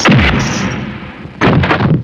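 Two loud film fight-scene punch impact sound effects: a heavy hit right at the start with a low, falling boom, then a second hit about a second and a half in.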